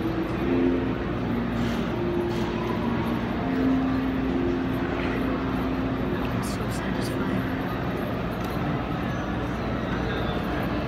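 Background chatter of distant voices over a steady mechanical hum. A few faint scrapes of metal spatulas on a metal cold plate spreading rolled ice cream.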